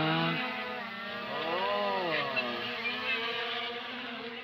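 Small quadcopter drone's propellers buzzing steadily as it is hand-launched and flies off. The pitch swells up and back down about two seconds in.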